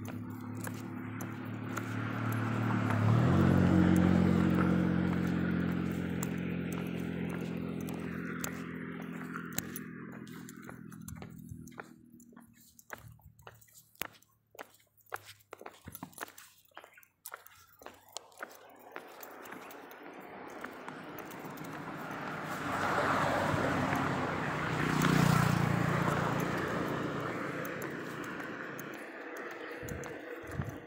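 Two motor vehicles passing one after the other. The first engine hum swells over the first few seconds and fades away by about twelve seconds in. After a quieter stretch with scattered clicks, a second, noisier pass swells and fades near the end.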